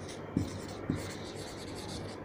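Whiteboard marker writing on a whiteboard: faint strokes, with two light taps of the tip, about a third of a second in and about a second in.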